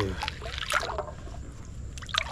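Shallow creek water splashing and trickling as a gloved hand digs rocks out of the stream bed, with one short splash a little under a second in.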